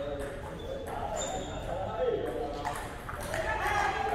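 Table tennis balls clicking off bats and tables in a large sports hall, with players' voices talking over them.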